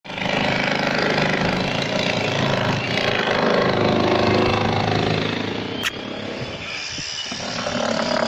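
A small engine running steadily, with a sharp click about six seconds in, after which it becomes quieter.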